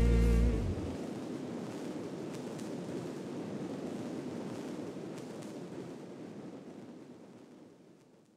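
The last held note of a hip-hop track, with vibrato over a bass line, cuts off about half a second in. It leaves a steady rough noise with a few faint clicks that slowly fades out to silence at the end.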